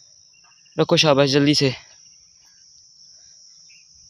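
Insect chorus: a steady, high-pitched drone that holds unchanged throughout, with one short spoken word about a second in.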